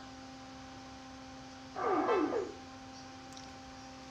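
Steady low electrical mains hum from a powered-up home-built audio power amplifier at idle, with no signal playing. About two seconds in, a short pitched sound falls in pitch over it.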